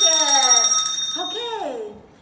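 Small handbell ringing, its several high tones holding and then dying away about a second and a half in, with voices calling out over it.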